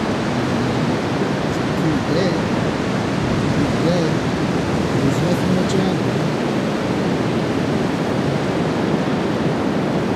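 Ocean surf breaking continuously on a sandy beach, a loud, steady rushing of waves and foam.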